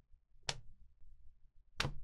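Two short, faint clicks, a little over a second apart, over quiet room tone.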